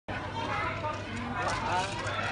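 Indistinct voices, with a low steady hum underneath.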